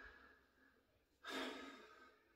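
A man's single sigh, a breathy rush a little over a second in that fades out over about half a second; otherwise near silence.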